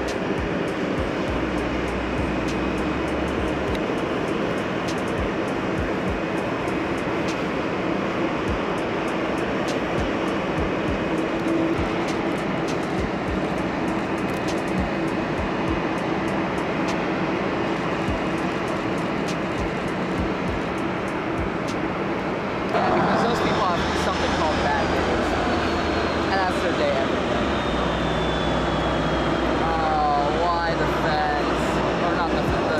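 Boeing 737-800's CFM56 jet engines running at taxi power: a steady engine noise under a high whine. The sound grows louder about three-quarters of the way in, and the whine then falls slowly in pitch.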